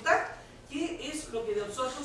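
A woman speaking Spanish, an emphatic syllable at the start, a brief pause, then her talk going on.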